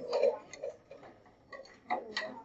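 A few short, sharp clicks and taps at uneven intervals, the loudest near the end, over a faint low murmur.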